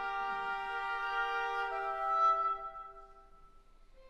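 Chamber orchestra strings sustaining a slow held chord that shifts to a new harmony partway through, then dies away before the strings come in again at the end.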